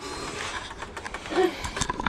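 Handling noise as a handheld camera is picked up and turned: rustling, with several light knocks and clicks in the second half.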